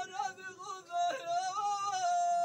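A man's solo voice singing an unaccompanied chant in a wavering, ornamented line, its pitch swooping up and down.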